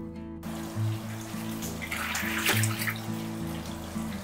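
Water splashing and rushing in a fish tank as a plastic basket scoops out live yellow catfish. It starts abruptly about half a second in and is loudest around the middle, under background music.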